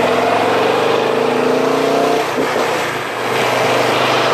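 Motorcycle engine accelerating, its pitch rising for about two seconds and then falling away, with wind and road noise.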